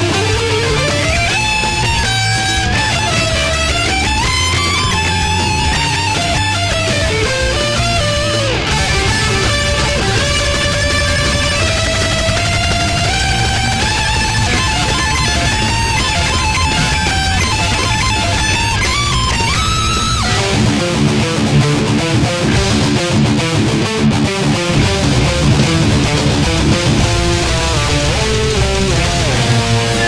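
Ibanez RG5EX1 electric guitar through a Boss ML-2 Metal Core distortion pedal, playing a melodic lead with slides and bends over heavy metal backing. About 20 seconds in the music shifts to a denser, chugging rhythm riff.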